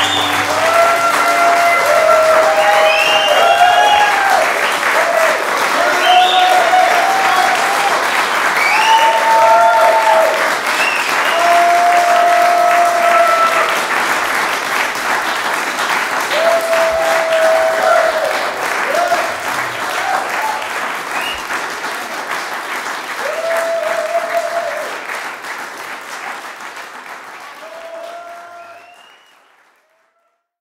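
Live concert audience applauding, with cheers and whoops over the clapping, fading out over the last few seconds.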